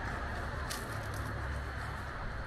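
Street background with a steady low rumble of city traffic and a faint brief high click a little under a second in.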